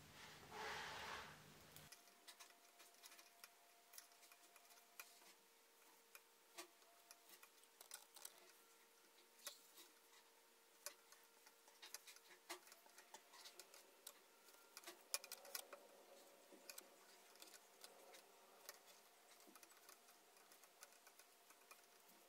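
Near silence with faint, irregular clicks of wooden double-pointed knitting needles tapping together while stitches are knitted two together in a decrease round.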